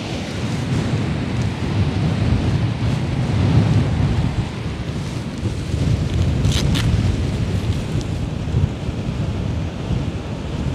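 Strong wind buffeting the microphone, a steady low rumble that swells and eases. About two-thirds of the way through there is a brief faint high crackle.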